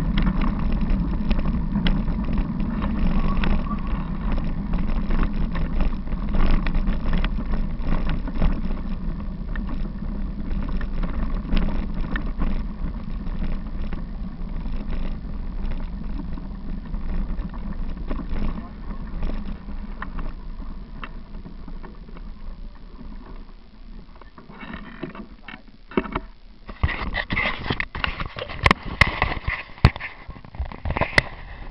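Bicycle riding along a gravel path, heard as a steady low rumble of wind on the microphone and tyre noise, with frequent small rattles and knocks from the bumps. It grows quieter after about twenty seconds. Near the end come a cluster of loud, sharp knocks and clatter from the camera being handled.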